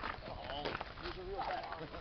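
Faint voices of several people talking in the background, in short snatches, over a low steady outdoor hum.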